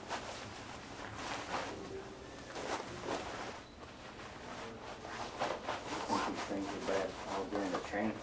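Indistinct talk among several people, louder in the second half, with rustling and small clicks of pressure suits and their fittings being handled.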